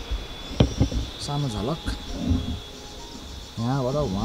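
A steady high-pitched insect drone runs under brief snatches of men's voices, with a single sharp click about half a second in.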